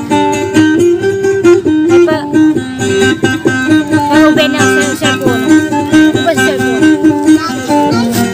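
Small guitar-like lute played by plucking, running a fast melody of short notes that keep changing pitch, in a dayunday performance.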